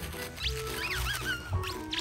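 A plush egg squeaky toy squeaking several times as a Labrador chews on it, each squeak a short rising and falling pitch, over background music.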